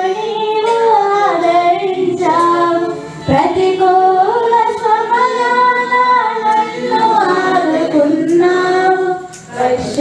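A hymn sung by women's voices in long, held phrases, with short breaths between lines.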